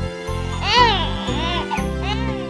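Children's-song instrumental with a steady bass accompaniment, over which a cartoon baby whimpers in short rising-and-falling wails as it starts to cry.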